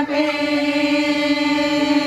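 Voices singing together, holding one long steady note.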